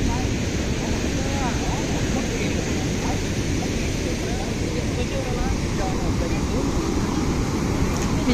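Steady rush of wind on the microphone mixed with the wash of breaking surf, with faint voices of people in the background.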